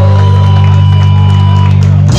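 Live rock band holding one loud chord on distorted electric guitars and bass, sustained steadily without a break.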